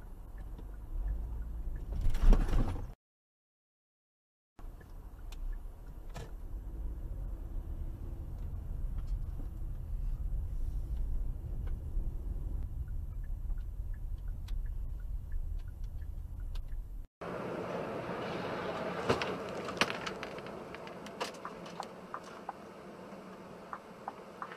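Dashcam recording of a car's road and engine rumble heard from inside the cabin. A short, very loud burst of noise comes about two seconds in, followed by a second or so of dead silence. After about seventeen seconds the road sound changes to a busier, higher one with scattered clicks.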